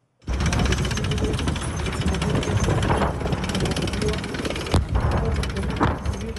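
Dense, continuous rapid gunfire and explosions from a night live-fire military exercise. It starts suddenly just after a moment of silence, and a few louder blasts stand out about three seconds in, near five seconds, and near the end.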